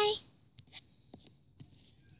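A voice holding a steady high note cuts off just at the start, then a few light taps and rustles of small plastic toys being handled.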